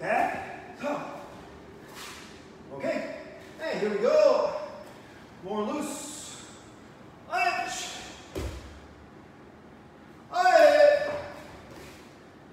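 A karateka's short, forceful voiced exhalations, one with each technique, about seven of them, the loudest and longest near the end. A dull thud about eight and a half seconds in.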